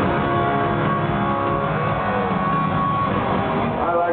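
Live rock band in an arena playing a short instrumental passage cued by the singer, with long held electric guitar notes over a dense wash of band and crowd noise.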